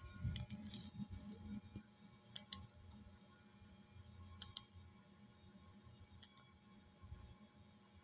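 Near silence with faint scattered clicks, some in close pairs about two seconds apart, over a low hum.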